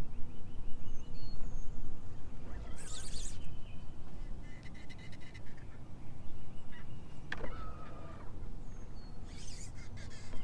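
Wind rumbling on the microphone, with scattered bird calls and clicks and rustles from a fishing rod and reel as a fish is hooked and fought. A loud rustling burst comes about three seconds in, and a run of reel clicks follows about two seconds later.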